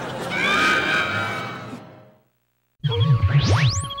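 Sitcom soundtrack with a few held pitched sounds, fading out within about two seconds. After a short silence, a sci-fi score starts: a loud, wavering low electronic tone, with a whistling glide that sweeps up high and back down.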